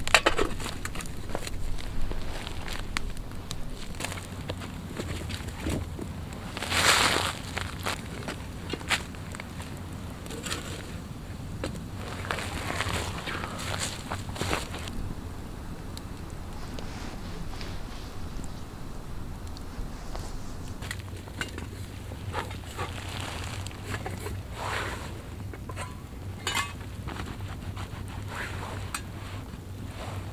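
Wood campfire crackling with scattered pops and clinks over a low, steady wind rumble, with a louder burst of noise lasting about a second some seven seconds in.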